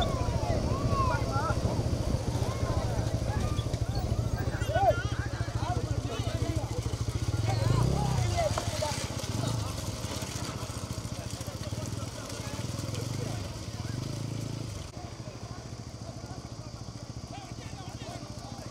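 A motorcycle engine running close by, revving up and easing off several times in the middle, and running quieter over the last few seconds. Men's shouts sound over it.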